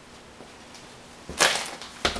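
Faint room tone, then a sudden short swish about a second and a half in and another at the very end: clothing brushing close past the microphone.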